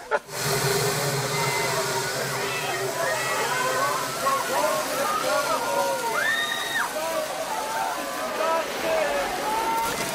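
Fire hoses spraying water against wooden railway cattle cars, a steady rushing hiss that starts suddenly. Many voices of the people inside the cars cry out over it at once.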